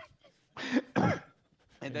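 A person coughing and clearing their throat: two short bursts around the middle, the second one falling in pitch.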